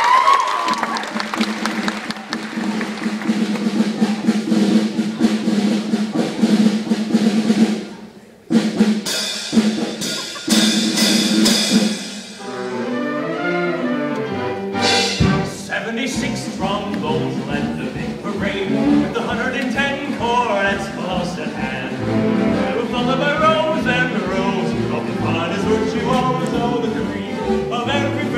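Band accompaniment for a stage musical: a held low chord, then a few sharp drum strokes, then, from about halfway through, a steady beat over a stepping bass line.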